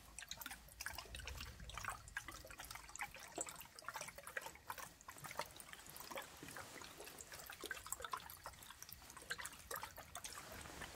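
Liquid sloshing and splashing inside a round-bottomed glass flask as it is swirled and shaken by hand. It is a faint, irregular run of small splashes and clicks with no pause.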